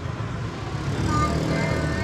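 Busy market-street ambience with a motorbike engine running close by, a steady low hum.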